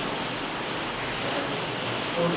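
A steady, even hiss of background noise with no distinct strokes or voice.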